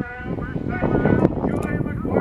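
A race announcer's voice calling the harness race over public-address loudspeakers, the words indistinct.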